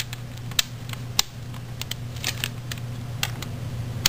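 Scattered sharp clicks and ticks as Torx screws are driven into a plastic router case with a screw gun, over a steady low hum.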